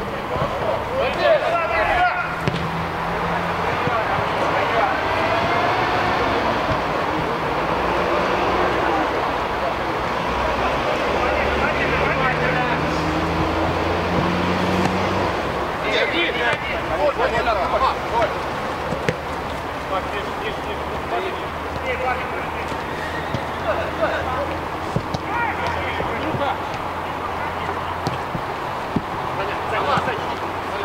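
Players' shouts and calls on a football pitch during play, over a steady low hum.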